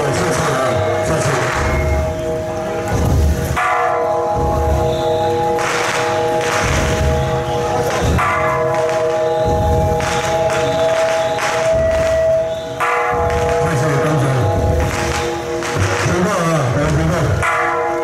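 Ringing, bell-like metal tones, several notes sounding together, renewed by a strike every second or two, from the procession's bells and percussion.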